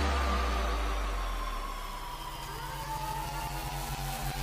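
Background electronic music, a dubstep-style passage: a held deep bass under a slowly falling synth tone, with faint rising sweeps.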